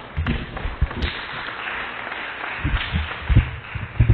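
Audience applauding, with a few low thumps mixed in.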